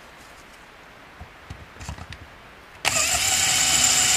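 Cordless drill starting abruptly about three-quarters of the way in and running at a steady speed, drilling into the top of the governor hole in a Honda GX160 engine's aluminium crankcase. Before it, a few faint knocks of handling.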